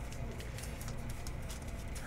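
Quiet room tone, a low steady hum, with faint light taps and rustles from handling a thick memorabilia trading card.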